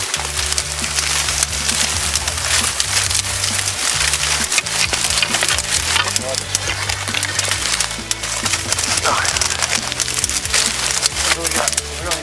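Dry marsh reed stalks crackling and snapping continuously as someone pushes through them, over background music with a low bass line.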